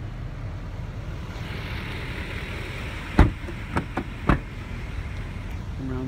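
Pickup truck door being shut as someone gets out of the cab: one loud clunk about three seconds in, then a few lighter knocks, over a steady low rumble.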